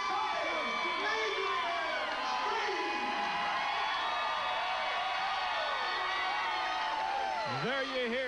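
Wrestling crowd shouting and whooping, many voices overlapping at a steady level. Near the end one man's voice comes in, closer to the microphone.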